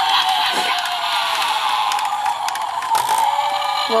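Animated hanging Halloween prop playing its sound effect through its small built-in speaker, a continuous warbling tone with a couple of sharp clicks from its mechanism near the end. It is not sounding good, the sign of a worn, failing prop.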